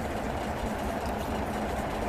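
Steady low background hum with no speech, even in level throughout.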